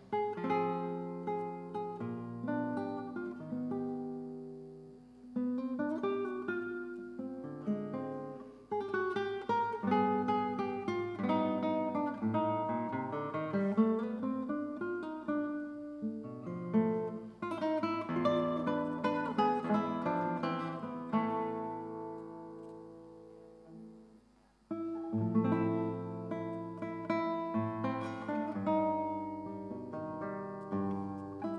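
Solo classical guitar playing a zamba-style concert piece, plucked melody notes over bass notes and chords. About three quarters of the way in, a phrase rings out and fades almost to nothing, then the playing picks up again.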